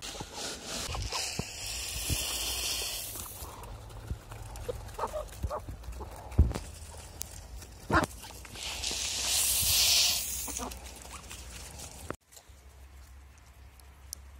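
A plastic scoop digging into a barrel of grain, with a rustling hiss of moving grain for about two seconds near the start. Then a flock of chickens feeding on scattered grain, with a few sharp taps and a second hiss about two-thirds of the way through.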